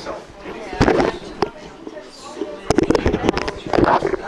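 People talking in a room, broken by a few sharp clicks: one about a second in, and a quick run of them in the last second and a half.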